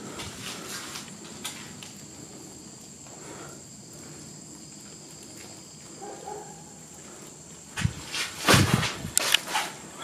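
Quiet, still air with a faint steady high-pitched tone, then a few loud scuffing thuds in the last two seconds, most likely footsteps on concrete stairs.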